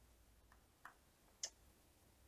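Near silence broken by three faint clicks, the last, about a second and a half in, the loudest: computer mouse clicks while on-screen text is being edited.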